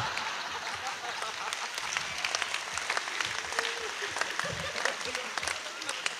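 Audience applause, a dense patter of many hand claps mixed with laughter, dying down near the end.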